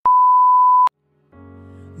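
A TV test-tone beep used as an editing transition: one steady high pure tone lasting just under a second, cut off abruptly. After a short silence, quiet music fades in a little over a second in.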